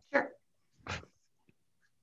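A dog barking twice, two short barks less than a second apart.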